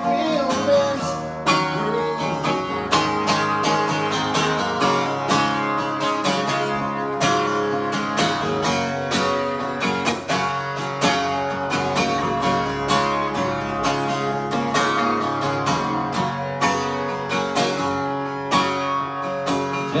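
Acoustic guitar strummed in a steady rhythm, played alone with no singing.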